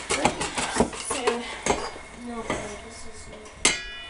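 Metal kitchen utensils and a frying pan clinking and knocking, with several sharp clicks in the first couple of seconds and a brief high-pitched sound near the end.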